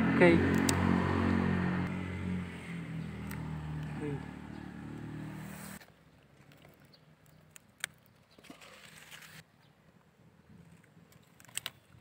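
A motor engine running with a steady hum, fading over about five seconds and cutting off abruptly about six seconds in; faint clicks follow in the quiet.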